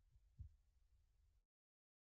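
Near silence: faint line hiss with one brief, faint low thump about half a second in, then the audio drops out to complete silence.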